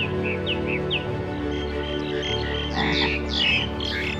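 A sustained low music drone with birds chirping over it: short falling chirps, several in the first second, then a busier flurry of calls near the end.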